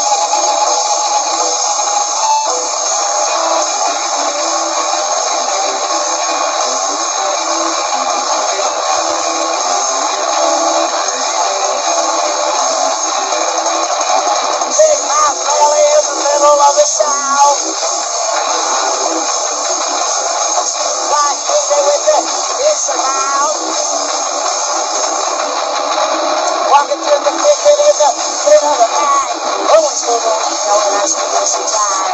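Live noise-rock band: two distorted electric guitars and a drum kit playing a dense, continuous passage, heard thin with no bass. Wavering pitched sounds rise out of the wash about halfway through and again near the end.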